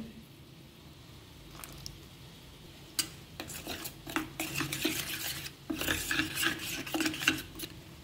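Steel spoon stirring and scraping inside a steel bowl, mixing ground spices with a little water into a paste. Quiet for the first few seconds, then a clink about three seconds in and quick, repeated scraping strokes.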